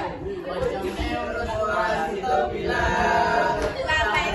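A group of teenagers singing together without accompaniment, holding long notes in the second half, over classroom chatter.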